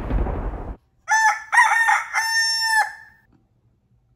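A rooster crowing about a second in: a cock-a-doodle-doo of three notes at a steady pitch, the last one held for most of a second. It is preceded by a short burst of noise.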